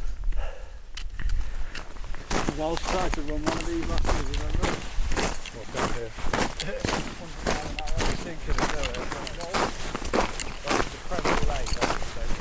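Footsteps of hiking boots crunching through snow, a steady walking pace of about two steps a second.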